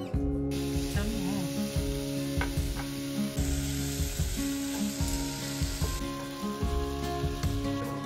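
Thin slices of beef sizzling on a hot electric griddle plate as they are laid down and spread with chopsticks for sukiyaki. The sizzle starts about half a second in and goes on steadily over soft background music.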